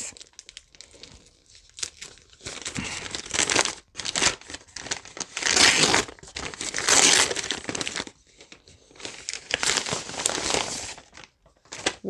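Wrapping paper crinkling and tearing as a gift is unwrapped by hand, in several bursts with short pauses between.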